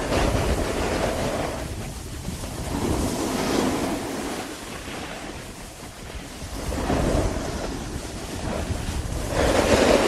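Wind buffeting an action camera's microphone on a fast run down a ski slope, with edges scraping over packed snow. It swells and fades about four times, loudest near the end.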